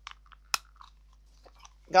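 Light handling noises from small objects, a pouch and a soft tape measure, with faint ticks and rustles and one sharp click about half a second in.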